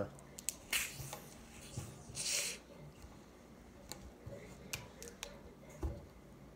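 A 16.9 oz plastic soda bottle's screw cap twisted open: a brief hiss of escaping carbonation about two seconds in, after a fainter puff about a second in. A few small sharp clicks of the cap and plastic bottle follow.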